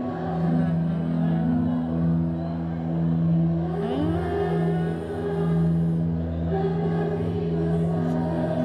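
Band music played back, carried by long held low notes with a melody above, and a rising glide in pitch about four seconds in.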